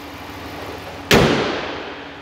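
The steel hood of a 2016 Ram 1500 slammed shut about a second in: one loud bang that dies away in under a second. It plays over the steady idle of the truck's 5.7-litre Hemi V8.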